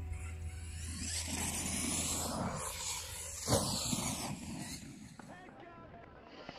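Pro-Line Pro-MT 4x4 RC truck's brushless electric motor whining up and down in pitch as it is driven hard over dirt, with tyre and chassis noise. A sharp knock about three and a half seconds in, after which it gets quieter.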